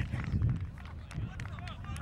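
Several voices shouting and cheering at once, over a low rumble: players and spectators celebrating a goal.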